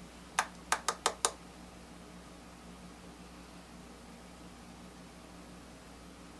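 Five quick, sharp taps within about a second, typical of a makeup brush tapped against an eyeshadow palette after dipping into the powder. Then only a faint, steady low hum.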